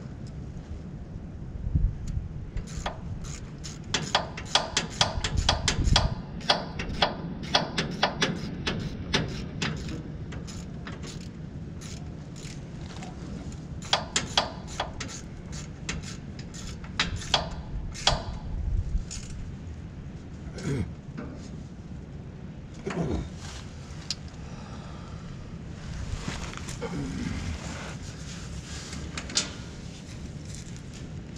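Hand tools working on a metal fitting of a truck's fuel system: sharp metallic clicks and knocks. They come in quick runs for the first ten seconds or so, then grow sparser.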